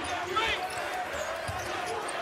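A basketball dribbled on a hardwood court, two low thumps about a second apart, over a steady hum of arena crowd noise.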